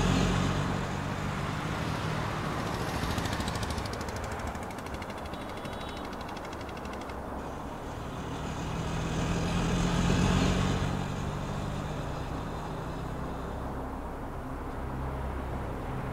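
Street traffic: a motor vehicle engine running with a steady low hum, louder at first and swelling again about ten seconds in.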